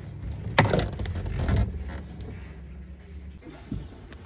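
Knocks and handling clatter from a plastic dash switch panel being worked back into place by hand, with one sharp knock shortly after the start. A low steady hum runs underneath and stops shortly before the end.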